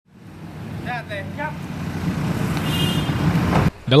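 Roadside traffic: vehicle engines running and a steady rumble of passing traffic that fades in at the start, with a faint voice about a second in. The sound cuts off suddenly just before the end.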